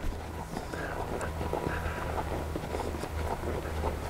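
A horse walking on arena sand: faint, soft, irregular hoof footfalls over a low steady hum.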